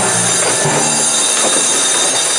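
Processional brass band holding one long, loud chord in a funeral march, with deep low brass under bright high notes.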